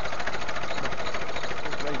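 International 3414 tractor-loader-backhoe's engine running steadily at idle, a fast, even pulse of sound.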